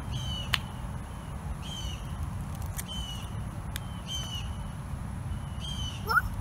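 A bird calling repeatedly: five short high calls, each sliding down in pitch and ending on a steady note, about every second and a half, over a low steady rumble.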